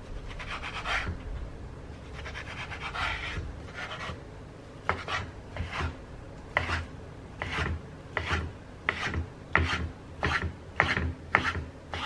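A chef's knife cutting bacon on a wooden cutting board. A few drawn-out sawing strokes through the bacon slices are followed, from about five seconds in, by a run of crisp chops of the blade onto the board, roughly one to two a second, as the bacon is diced.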